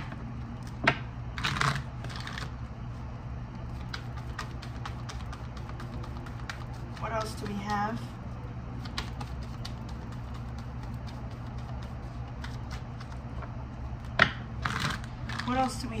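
A deck of oracle cards being shuffled by hand: a long run of light card clicks and riffles, with louder flurries near the start and about a second before the end, over a steady low hum.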